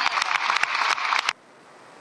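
Applause from a crowd of deputies on the parliamentary benches, dense irregular clapping that cuts off abruptly just over a second in, leaving only a faint hiss.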